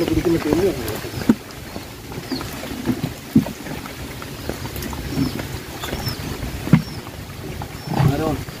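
Hands sorting a heap of small freshly caught fish on a plastic tarp: low handling noise with three sharp knocks spread through, and a voice briefly at the start.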